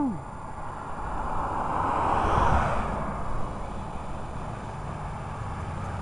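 A vehicle passing by on the street: its noise swells to a peak about halfway through and then fades away.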